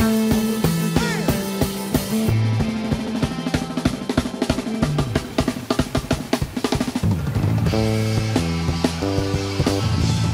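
Live band music led by a drum kit. From about two seconds in to about seven there is a long, rapid drum fill of fast strokes. After that the band comes back in with bass and sustained chords.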